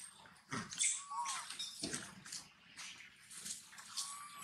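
A baby macaque gives a short, high whimpering squeak about a second in and another right at the end, among soft scuffs and rustles in the dry leaves.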